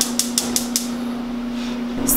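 Samsung gas range burner's spark igniter clicking rapidly, about six clicks a second, as the control knob is turned; the clicking stops less than a second in.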